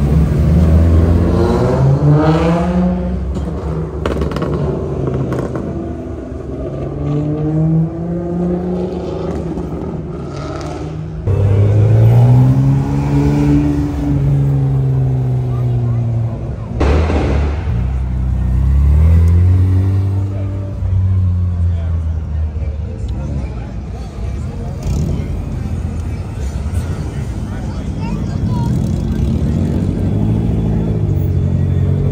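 Car engines revving as cars pull out past a crowd, the pitch sweeping up and falling back in several long rev pulls, with a sudden loud blast about seventeen seconds in.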